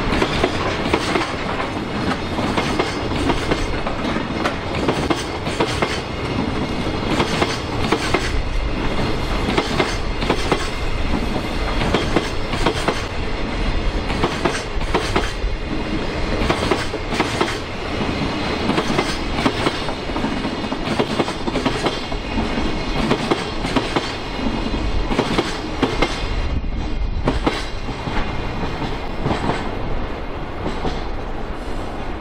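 Koki container wagons of a long freight train rolling steadily past, their wheels clicking and knocking over the rail joints in a rapid, continuous clickety-clack.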